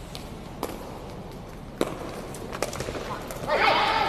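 A few sharp, echoing kicks of a feathered shuttlecock (đá cầu) struck by players' feet. Near the end come loud shouts from players' voices.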